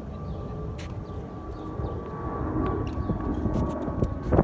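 Wind rumbling on the microphone under a steady high-pitched tone, with a few sharp taps: one about a second in and two near the end.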